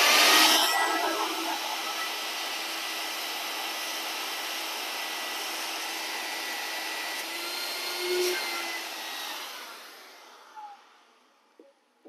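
Shop vac running steadily with a faint whine, sucking dust through its hose nozzle. It is loudest as it starts and switches off about ten seconds in, the motor winding down to a stop.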